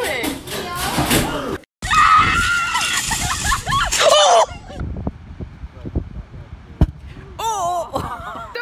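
Young women screaming and shouting for about two and a half seconds after a brief cut, then a quieter low rumble with scattered knocks and one sharp knock near the end.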